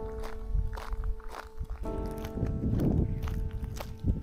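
Footsteps of a person walking on a rural road, over background music with sustained chords.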